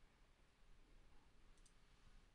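Near-silent room tone with a faint computer mouse click about one and a half seconds in, two quick ticks close together as the button goes down and comes back up.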